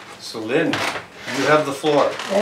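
A man's voice talking in short stretches, in a small room.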